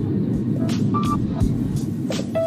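Airliner cabin noise on the takeoff roll: a loud, steady low rumble of the engines and the wheels on the runway, heard from inside the cabin, starting abruptly.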